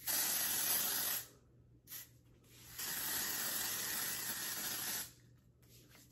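Sally Hansen Airbrush Legs aerosol spray-tan can hissing as it sprays onto skin in two bursts: a short spray of about a second, then a longer one of about two and a half seconds.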